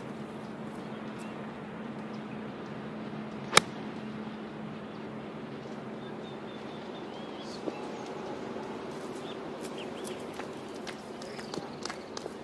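A single crisp click of a golf iron striking the ball, about three and a half seconds in, over a steady outdoor background with a few faint bird chirps.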